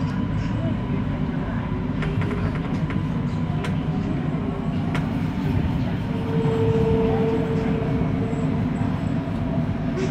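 Siemens Inspiro MRT train running on elevated track, heard from inside the train: a steady low rumble of wheels and running gear with a few light clicks. A higher steady tone rises over the rumble for about two seconds past the middle.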